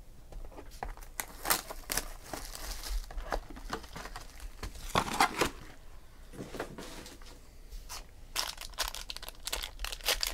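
Plastic wrapper of a 2017 Topps Inception baseball card pack crinkling and tearing as it is handled and ripped open by hand, in several bursts of crackling, the busiest near the end.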